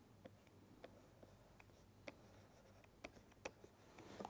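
Near silence with a few faint, scattered ticks of a stylus writing on a pen tablet.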